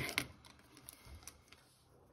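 Two sharp clicks about a fifth of a second apart as a ballpoint pen is set down on a desk cutting mat, followed by a few faint taps of pens being handled.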